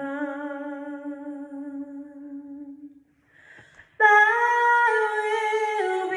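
A woman singing unaccompanied into a microphone. She holds one long low note that fades out about three seconds in, takes a breath, then comes in louder on a higher held note about four seconds in.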